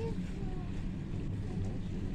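A steady low rumble of background noise, with faint voices briefly audible over it.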